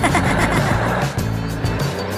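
Cartoon background music with a character's gasp and laugh at the start, over a brief rushing, hissing sound effect that fades after about a second.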